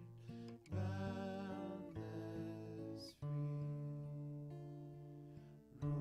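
Acoustic guitar strummed over grand piano, playing slow sustained chords with a new chord struck about every two and a half seconds.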